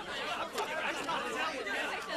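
Indistinct background chatter of a crowd of people talking at once in a large room, a steady murmur with no single clear voice.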